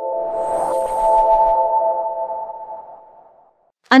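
Intro logo sting: a held electronic chord with a noisy whoosh swelling over it in the first second or so, then fading away before the voice-over begins.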